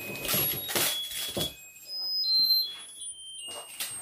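High electronic beeps from a small battery-powered gadget, stepping through a string of different pitches like a little tune. Through the first second or so the crinkle of a wrapper being torn off a small gift is mixed in.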